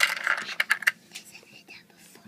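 Small plastic Lego pieces clicking and rattling as they are handled: a quick flurry of clicks in the first second, then quieter.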